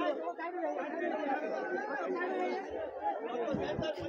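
A crowd of people talking at once, many voices overlapping into a steady chatter.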